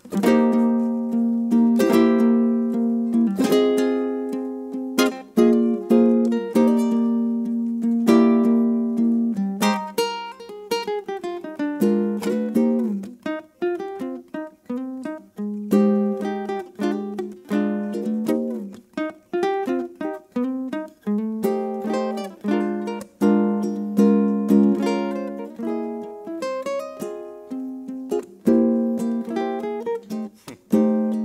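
Solo ukulele playing an instrumental arrangement, plucked chords with a melody picked out over them; the playing begins at the very start.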